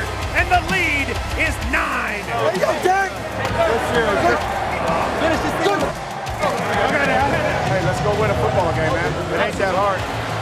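Several men's voices shouting excitedly over one another, over background music with a steady low bass.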